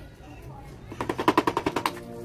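A rapid metallic rattle from the head of a Fuji tapping machine being worked by hand, about a dozen sharp clicks a second for about a second.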